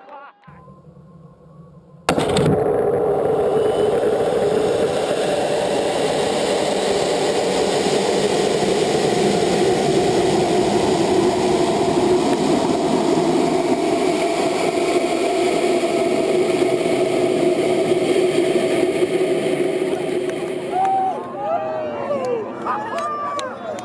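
Onboard audio from an amateur high-altitude rocket in flight: a loud, steady rushing noise that starts suddenly about two seconds in and holds on unchanged until near the end, when people's excited voices come in.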